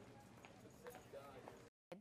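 Faint hallway ambience: footsteps clicking on a hard floor, with distant indistinct voices. It cuts off to dead silence just before the end.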